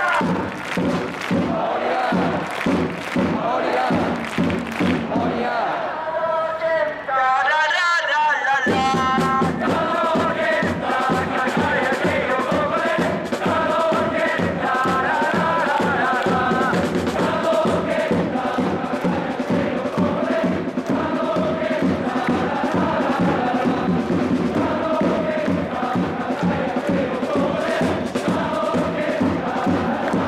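Football supporters chanting and singing in unison, driven by a steady bass-drum beat. The drum drops out briefly about a third of the way through, then the chant picks up again at full strength.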